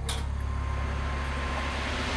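Dramatic TV underscore music: a deep sustained bass drone, a sharp hit right at the start, then a hissing swell that builds in loudness.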